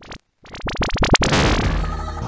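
Electronic intro sound effect for a show's opening: a brief burst, then a run of sharp hits that speed up and run together into sustained synthesizer music.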